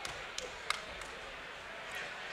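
Spectators in a hall talking, a steady low chatter with no single voice standing out, broken by a few short sharp clicks, the loudest about three quarters of a second in.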